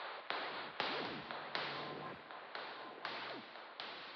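Modular-synthesizer sound effect: about seven sharp hissing cracks at an uneven pace of roughly two a second, each dying away slowly, with faint gliding tones underneath, the whole getting gradually quieter.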